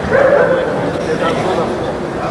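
German Shepherd Dog barking, loudest just after the start, as it runs at and grips the helper, over a steady background of voices.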